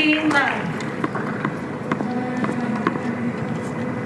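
Indistinct voices: a short exclamation right at the start, then faint talk, over a steady background hum, with a couple of light knocks about two seconds in.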